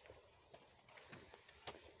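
Near silence with faint footsteps on a forest path strewn with pine needles: a few soft steps, roughly every half second.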